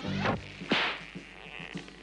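Cartoon sound effects of a rope snare trap springing. A falling whoosh comes first, then a loud whip-like swish a little under a second in, over background music.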